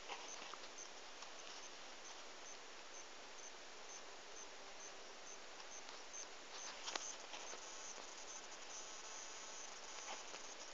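Faint outdoor hiss with an insect chirping high and regularly, about twice a second. A brief rustle or handling knock comes about seven seconds in.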